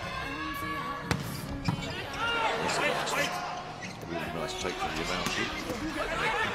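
A volleyball is struck hard twice, about half a second apart, about a second in: a serve and then its reception. Throughout there is the steady noise of a large arena crowd with voices.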